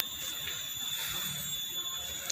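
Pause between spoken phrases: a low background hiss with a thin, steady high-pitched whine.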